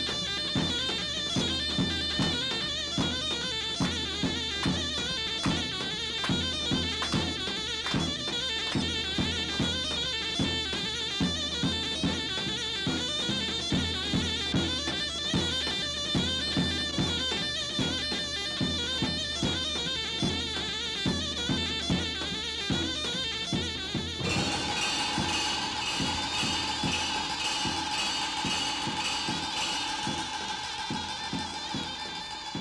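Turkish davul-and-zurna folk dance music: the big double-headed davul beats a steady dance rhythm under the shrill, reedy melody of the zurna shawm. About 24 seconds in it cuts off abruptly and gives way to music of long held notes without the drum.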